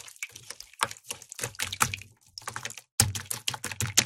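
Hands squeezing and kneading a blob of glittery slime: rapid, irregular crackling and popping clicks in clusters, with a brief pause just before the last second and a loud flurry after it.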